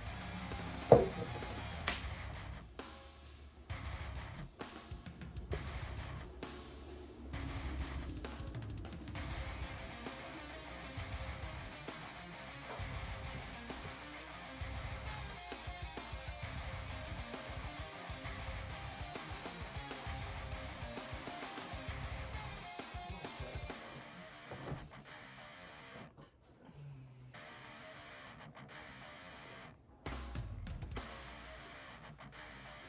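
Background music with drums and guitar. A single sharp knock stands out about a second in, the loudest moment.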